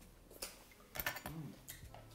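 Quiet eating sounds: a few soft mouth clicks and lip smacks from chewing chicken eaten by hand, with a short closed-mouth 'mm' of enjoyment a little past the middle.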